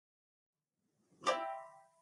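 The opening of a recorded children's months-of-the-year song: about a second of silence, then a plucked-string chord rings out and fades while the first word, "January", is sung.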